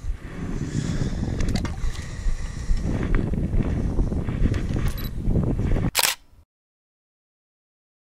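Wind buffeting a camera microphone, with rubbing and faint clicking handling noise as a small hammerhead shark is held and unhooked. A sharp knock comes about six seconds in, and then the sound cuts off to silence.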